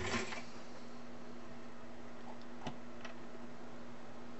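A steady low electrical hum, with a short rustling noise right at the start and two faint clicks a little under three seconds in.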